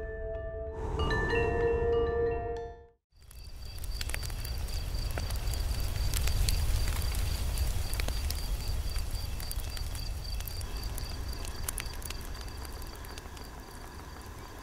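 Chiming mallet-percussion logo music that fades out about three seconds in. Then campfire night ambience: a fire crackling with scattered sharp pops over a low rumble, and an insect chirping steadily at a high pitch.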